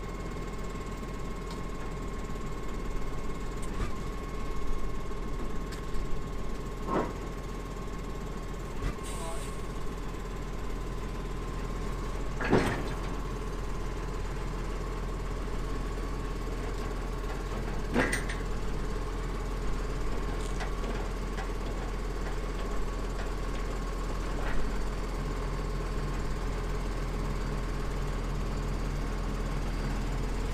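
Tractor diesel engine running steadily at low speed while it pushes a combine header trailer, with a few sharp metallic clanks from the trailer and ramps.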